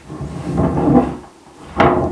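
Handling noise: a rubbing, scraping sound for about a second, then a single sharp knock near the end.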